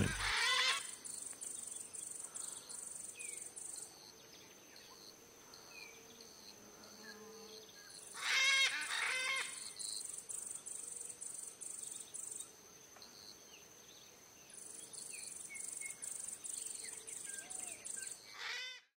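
Blue-throated macaw calls: a short harsh call at the start and a longer run of calls about eight seconds in. Behind them, an insect pulses at high pitch about three times a second, with a few small bird chirps.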